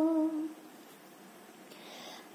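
The tail of a long held sung note in a lullaby, a single steady pitch that fades out about half a second in, followed by a quiet pause with a faint breath near the end before the next line.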